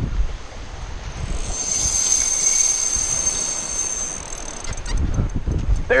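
Wind buffeting the microphone on a surf beach. From about a second and a half in, a spinning reel's drag whines steadily for about three seconds as a hooked fish pulls line.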